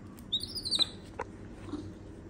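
Baby monkey giving a short run of high-pitched squeaking calls about half a second in, followed by a couple of light clicks.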